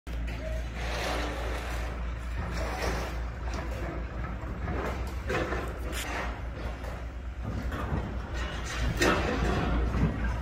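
Working yard noise: a steady low rumble with scattered metallic knocks and clanks, the loudest near the end.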